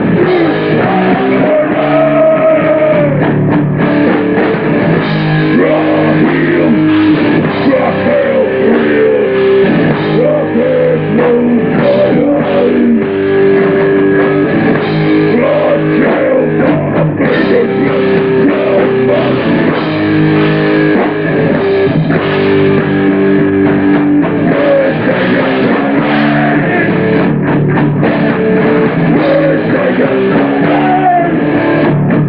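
Live hardcore punk band playing loud and without a break: distorted electric guitar over a pounding drum kit.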